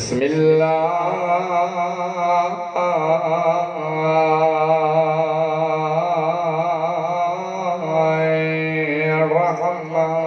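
A man chanting on one long, steady held note, the vowel sound shifting over the unchanging pitch, with only brief breaks near three and eight seconds in.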